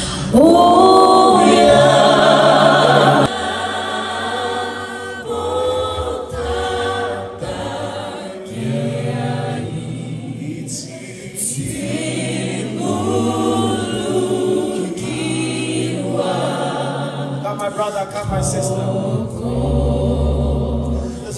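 A small group of singers on microphones singing a worship song in harmony. The song opens with a loud held note over the first three seconds.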